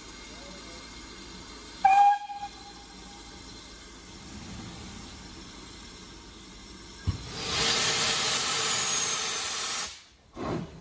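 A steam locomotive gives a short whistle toot about two seconds in. About seven seconds in, a loud hiss of steam starts and lasts about three seconds, typical of the cylinder drain cocks blowing as the engine moves off.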